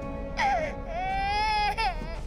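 A baby crying: a short falling wail about half a second in, then one long, high cry held for most of a second, over a steady background music drone.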